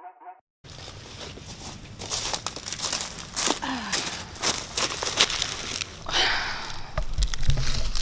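Footsteps crunching and rustling over the woodland floor as a person walks up, an irregular string of crackles. Near the end, a low rumble and knocks as the camera is handled.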